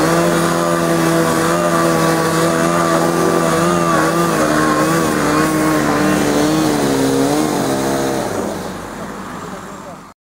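Diesel engine of a tracked logging skidder revving up, then running with its pitch wavering up and down, and dropping away about eight seconds in.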